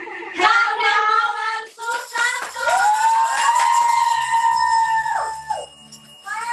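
Excited women's voices, then one long high-pitched squeal held for about three seconds that drops off near the end.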